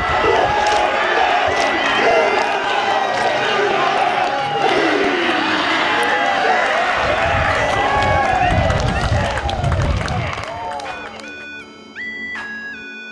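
A rugby team performing a haka: many young men shouting together in unison, with heavy low thumps of stamping partway through. The voices fade, and electronic music notes come in near the end.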